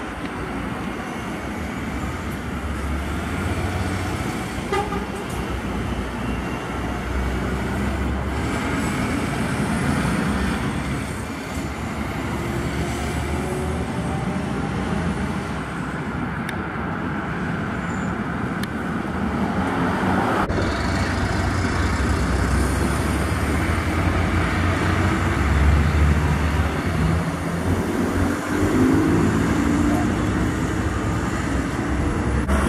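Heavy Scania tractor-trailer trucks passing on a highway: diesel engine drone and tyre noise swelling and fading as each goes by, loudest in the last few seconds.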